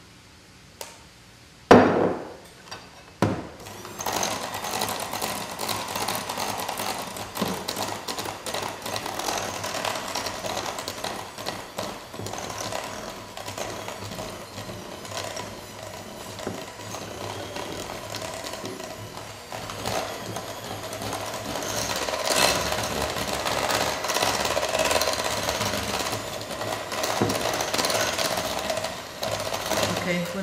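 A few sharp knocks, then an electric hand mixer starts about four seconds in and runs steadily, its beaters whipping cream cheese, eggs and powdered sugar in a glass bowl into a smooth mixture.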